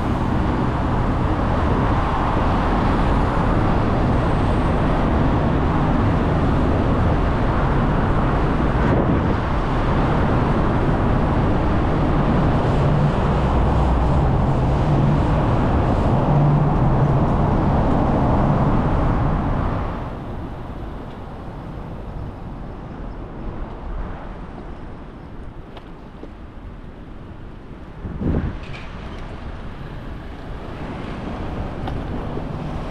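Rushing wind on a bike-mounted action camera's microphone mixed with passing road traffic, loud and steady for about twenty seconds, then much quieter. A short louder sound comes near the end.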